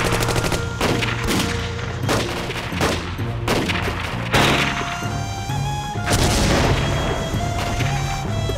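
Gunfire: a string of separate shots through the first half, then a heavier bang about six seconds in, over a dramatic music score.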